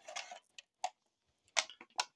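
Several light, irregular clicks and ticks of handling: body clips being pulled and the plastic body shell of an Arrma Typhon RC buggy being lifted off its chassis.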